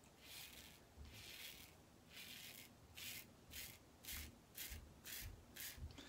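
Karve aluminium safety razor scraping through lathered stubble on an across-the-grain pass: about ten faint, short strokes, coming quicker and shorter in the second half.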